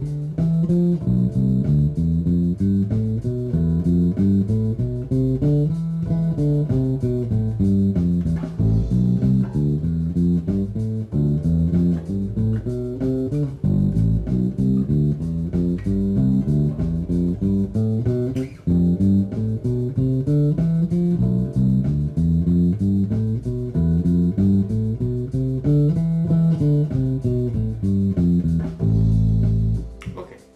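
Electric bass (Fender Jazz Bass) playing scales note by note, running up and down one mode per chord of an Am7–Dm7–G7–Cmaj7–Fmaj7–Bm7b5–Esus–E progression: Aeolian, Dorian, Mixolydian, Ionian, Lydian, Locrian, Phrygian. The runs go in steady even notes and end on a held low note near the end.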